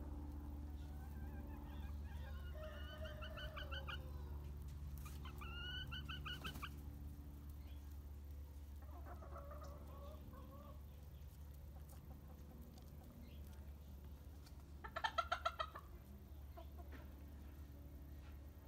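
Backyard chickens clucking: short runs of quick, pulsed clucks in the first few seconds, a softer one midway, and the loudest run near the end. A steady low hum runs underneath.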